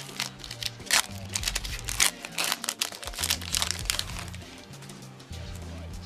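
Foil Pokémon booster pack wrapper crinkling in the hands as it is opened and the cards are slid out, in scattered crackles. Background music with a bass line of held notes that step from one pitch to the next plays underneath.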